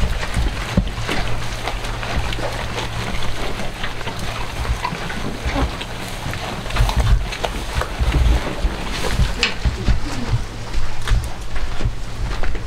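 Goats pulling at and chewing fresh-cut grass at a feeder: continuous rustling and crackling of the grass with many small crunching clicks, over low rumbling thumps on the microphone.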